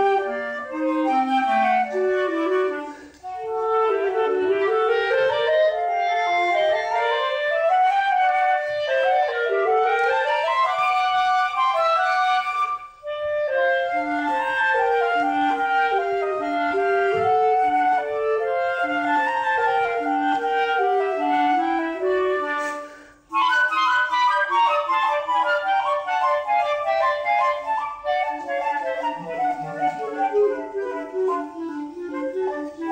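Flute and clarinet duet playing quick, interweaving melodic lines, with brief breaks between phrases about 3, 13 and 23 seconds in.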